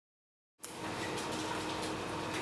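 Silence for about half a second, then a steady faint hiss with a low hum running under it.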